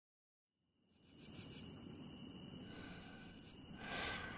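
Faint night ambience of crickets trilling steadily, fading in from silence over the first second or so. A louder rushing sound swells up just before the end.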